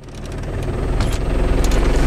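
A vehicle's engine and road noise heard from inside the cabin: a steady low rumble that builds over the first second, with a few sharp knocks or rattles partway through.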